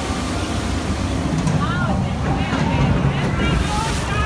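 Voices from the dark ride's sound effects, heard from about a second and a half in, over a steady low rumble.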